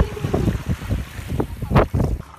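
Wind buffeting the microphone at the water's edge, irregular and gusty, with shallow surf washing over the sand; one louder burst near the end.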